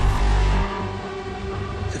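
Trailer score and sound design: a deep low rumble, the tail of a boom, drops away under a second in and leaves a sustained drone of steady tones.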